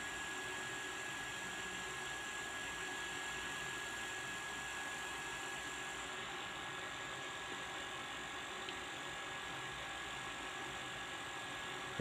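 Steady background hiss and hum with a faint constant high whine, no distinct events.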